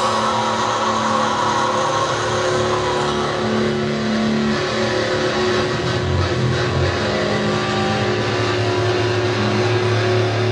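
Distorted electric guitar and bass notes held and ringing through the band's amplifiers, changing pitch every few seconds, with no steady drumbeat.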